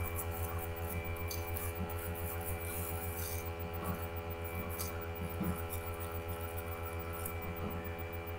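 Steady electrical mains hum, with faint rubbing and scattered light clicks as a solvent-wet brush is worked over a Walther .22 pistol's frame and slide.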